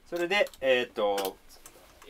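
Speech: a man says a short phrase in Japanese, then the room goes quiet apart from a few faint clicks.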